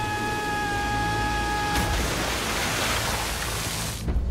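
Held chords of soundtrack music fade out as a loud rush of noise like falling water swells up, then cuts off suddenly at the end.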